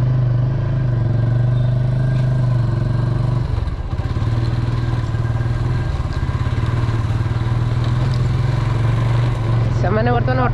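Motorcycle engine running steadily under way, with a brief dip about three and a half seconds in.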